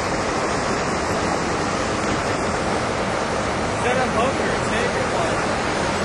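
Steady rush of flowing stream water, with faint voices about two-thirds of the way through.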